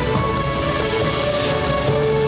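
News theme music for a TV bulletin's opening titles: sustained synth notes over a steady pulsing beat.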